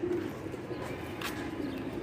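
Domestic pigeons cooing, a low wavering coo, with one light click about a second in.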